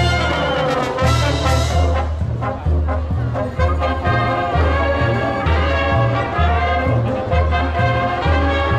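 Marching brass band playing, with trumpets, trombones, saxophones and sousaphones carrying a melody over a low bass part that pulses steadily on the beat.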